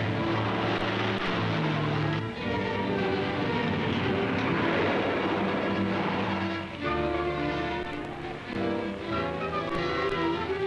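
Orchestral film-score music led by strings, moving through changing chords.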